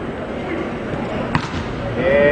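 Steady arena crowd noise with one sharp smack of a volleyball about a second and a half in, the ball bounced or struck around the serve.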